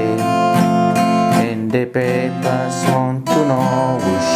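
Acoustic guitar strummed in chords, with the chords changing every second or so, played by a beginner.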